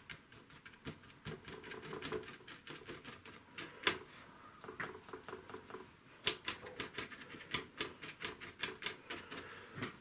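Paintbrush dabbing and stippling acrylic paint onto gesso-coated paper taped to a board: irregular light taps, several a second, with a sharper knock about four seconds in and a quicker run of taps in the second half.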